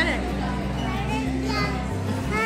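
Scattered chatter of voices, children's among them, over background music with a steady low bass line.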